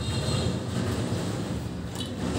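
A steady low rumble of background noise, with a faint click near the end.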